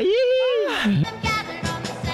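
An excited shout, a long drawn-out "ahí!" that falls in pitch at the end, followed about a second in by background music.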